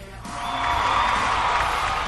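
Background music with a swelling wash of noise that builds up about half a second in and then holds.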